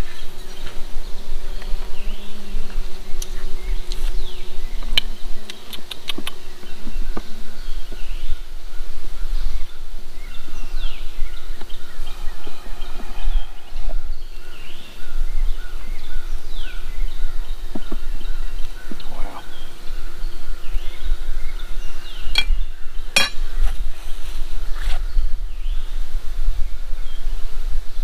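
Honey bees buzzing in a steady hum around an opened nuc box, with a few sharp clicks and scrapes as a hive tool pries at the glued-in wooden frames. A steady low rumble sits underneath.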